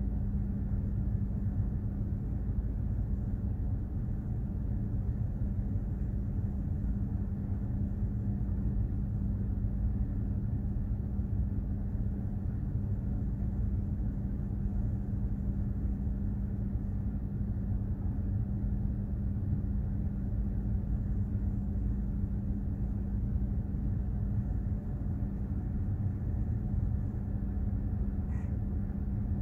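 Steady low rumble with a constant hum underneath, the onboard machinery noise of a container ship under way, unchanging throughout.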